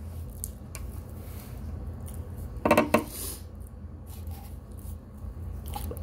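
Spoon clicking and scraping against a plate, a few light strokes near the start and again near the end, with one short, loud vocal sound from the eater about three seconds in.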